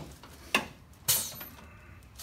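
Handling sounds at a chiropractic table as the patient's head is taken in the hands on the paper-covered headrest: a sharp click about half a second in, then a louder brief rustle just past one second.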